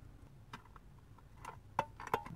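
Fork and cardboard food box being handled: three faint clicks, the last and sharpest near the end with a brief ring.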